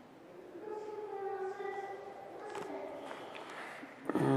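A child's voice, faint in the background, making long drawn-out high-pitched vocal sounds that slide a little in pitch.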